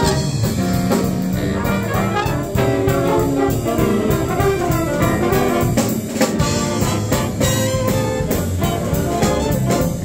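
Jazz big band playing swing live: saxophones, trombones and trumpets in ensemble over a drum kit.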